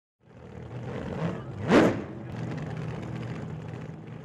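A car engine running, with one short, sharp rev about a second and three quarters in, then settling back to a steady run.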